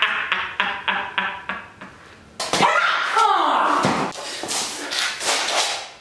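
A man laughing in quick, even ha-ha pulses, about five a second, that break off after a second and a half. After a short pause comes a sudden loud smack, then a cry that falls in pitch.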